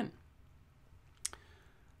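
Near-silent room tone broken by a single short click a little past halfway.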